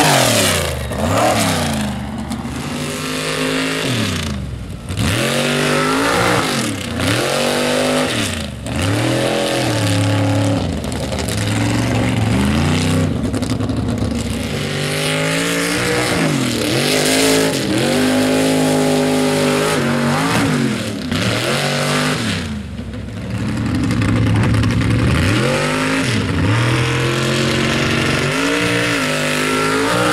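Lifted mud truck on oversized tyres, its engine revved hard again and again as it churns through mud: the pitch climbs and drops back about every couple of seconds, holding steadier for a few seconds near the end.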